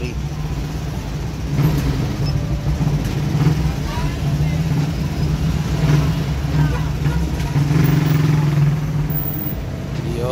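A motorcycle engine idling with a steady, even low hum.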